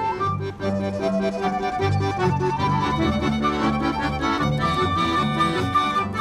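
Small acoustic street band playing a tune together: accordion to the fore over violin, flute and a double bass line, with sustained notes.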